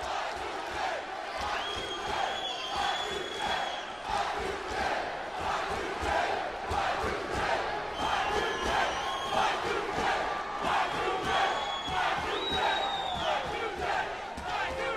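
Large arena crowd cheering and shouting throughout, a steady dense din. Long, high-pitched tones ring out over it several times.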